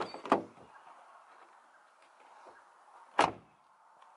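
Car door of a Ford Fiesta ST: the handle and latch click twice as it is opened, then about three seconds in it shuts with a single thud.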